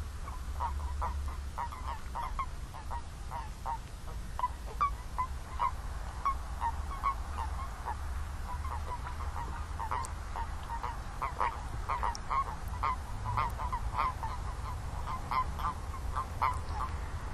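Chorus of common toads calling: short, croaky, pitched calls repeating irregularly several times a second, growing denser about two-thirds of the way through. These are the males' breeding-season calls. A steady low rumble runs underneath.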